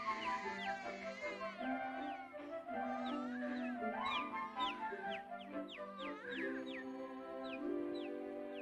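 Orchestral film score of soft held notes, laced with many quick falling whistled chirps that sound like birdsong.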